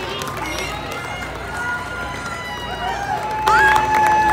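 Concert crowd, mostly women, cheering and screaming with many high, drawn-out voices at once; it gets suddenly louder about three and a half seconds in with a strong held scream.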